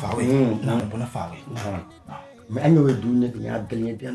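A man's voice talking animatedly, the pitch rising and falling in quick phrases, over faint background music.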